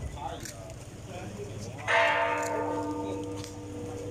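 A metal bell struck once about two seconds in, ringing on with several steady tones that fade slowly.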